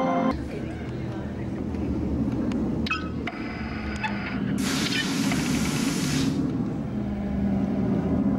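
Chiming music cuts off just after the start, leaving a steady low rumble of room hum and faint murmur. About halfway through, a hiss like released air sounds for under two seconds.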